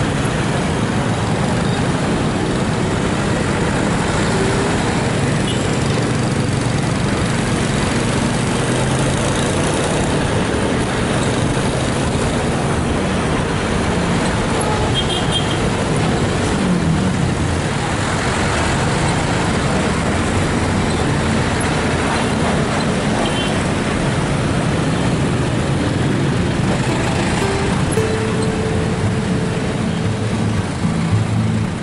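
Steady road-traffic noise from a car driving in dense city traffic: engine hum and tyre rumble, with passing vehicles around.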